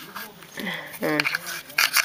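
A man talking in short, halting fragments with a pause between them, in a small room.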